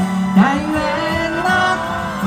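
Live concert music through outdoor PA speakers: a woman singing a Taiwanese minge (folk-pop) song with band accompaniment, her voice wavering with vibrato on held notes.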